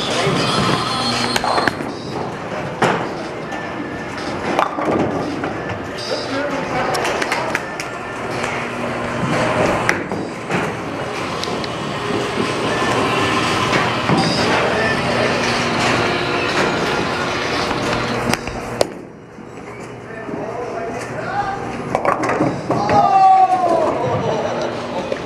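Bowling alley din: bowling balls rolling down lanes and knocking into pins, with many sharp clatters and thuds over a steady hubbub of voices.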